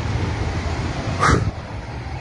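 Steady low rumble of street traffic, with one short, sharp sound a little past halfway.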